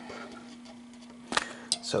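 A faint, steady low hum with a single sharp click about a second and a half in.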